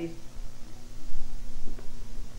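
A steady low electrical hum with a few dull low bumps about a second in.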